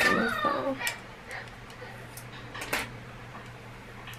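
A voice briefly at the start, then a couple of light clicks from a plastic comb and hair clips being handled while hair is sectioned, over a steady low hum.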